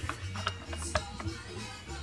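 Handling noise from a Texas Instruments SR-10 pocket calculator being picked up and turned over in the hand: a few light plastic clicks and some rubbing, over a low steady hum.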